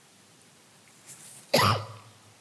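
A person coughing once, a short, loud cough about one and a half seconds in after near quiet, part of a coughing spell.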